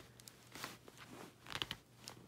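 Faint clicks and scrapes of a magazine being worked into an MP5 magazine-well adapter on an airsoft rifle, a snug fit pushed in one-handed.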